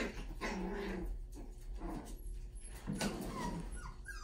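Puppies play-growling in short rough bursts as they wrestle, with a couple of high yips near the end.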